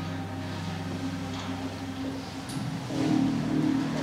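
Background music from a TV episode clip, played over loudspeakers into a lecture hall: sustained low notes that swell louder about three seconds in.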